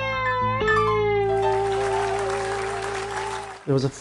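Distorted electric guitar playing bent, gliding notes, then holding one long sustained note for about three seconds. The music cuts off suddenly near the end.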